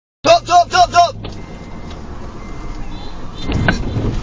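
Four short, loud pitched sounds in the first second, then steady road noise heard inside a moving car, with a louder knock near the end as the car bumps into the back of a motorbike.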